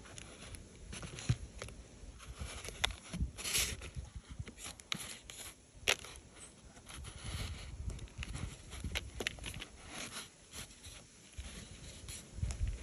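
A small plastic digging tool scraping and chipping into a crumbly chalk block, with irregular scratching and occasional sharp clicks as pieces break off and fall onto a paper plate.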